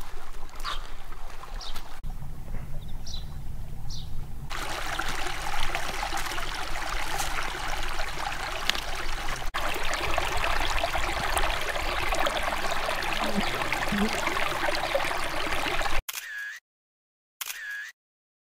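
Shallow stream trickling over rocks, a steady watery hiss that gets louder about four seconds in after a quieter stretch with a few faint high chirps. It cuts off suddenly near the end, leaving short chirps repeated about every second and a half.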